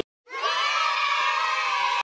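Cartoon sound effect of a group of children cheering together in one long held shout, fading in after a brief silence.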